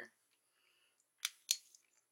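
Two sharp switch clicks about a quarter of a second apart, a little past a second in, as the lights are switched for candling the eggs.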